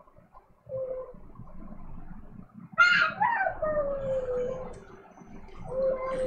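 A dog whining and howling in drawn-out calls: a short whine, then a louder howl about three seconds in that slides slowly down in pitch, and another held whine near the end.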